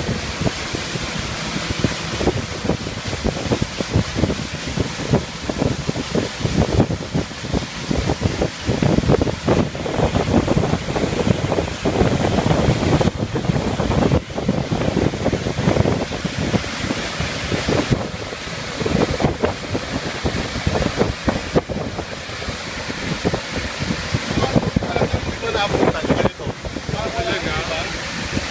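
Wind buffeting the microphone on an open motorboat under way, over a steady rush of water along the hull; the loudness surges and dips with the gusts.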